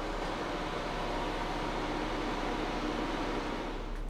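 Steady fan-like hiss with a faint low hum and a few faint steady tones, as of a ventilation fan running.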